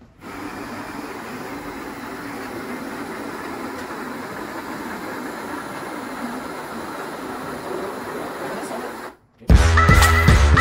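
Cordless drill driving a malt mill, crushing malt grain with a steady grinding rush. About nine seconds in it stops, and loud music begins.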